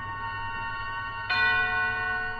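A radio-drama music cue between acts: a held, bell-like chord, joined just over a second in by a louder, fuller chord that rings on.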